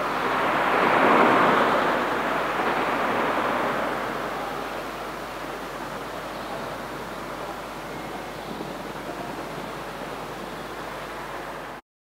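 Closing wash of noise at the end of an electronic track, like surf or wind. It swells about a second in, fades slowly, and cuts off suddenly near the end.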